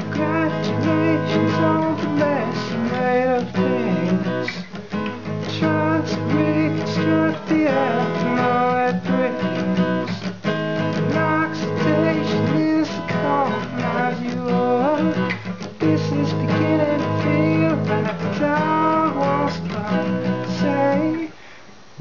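Acoustic guitar strummed through a repeating three-chord progression, with a man singing along.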